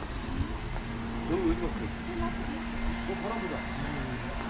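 Indistinct voices of people talking in the background, with no clear words, over a steady low rumble and a faint steady hum.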